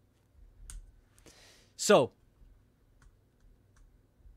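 A few light clicks on a desk computer, spread through the pause, as the presentation slide is advanced. A short breath, then the loudest sound: the presenter saying "So" about two seconds in.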